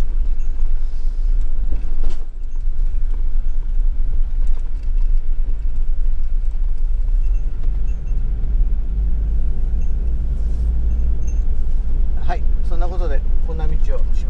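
Camper van driving, a steady low rumble of engine and road noise heard from inside the cab, growing a little heavier about halfway.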